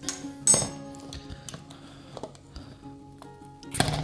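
Soft background music, with a few light clinks and clicks, the sharpest about half a second in, as a Ninja Creami's plastic pint tub and its lid are handled on a countertop.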